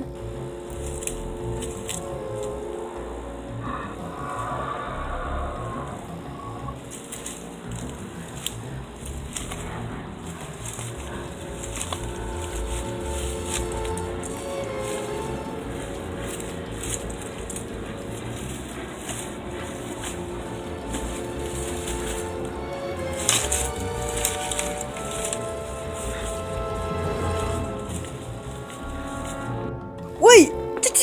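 Background music of long held tones over a low rumble, without speech.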